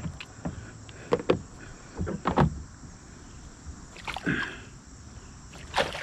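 A large chain pickerel thrashing in a landing net at the side of a kayak: a series of short, sharp splashes and knocks, the loudest near the end.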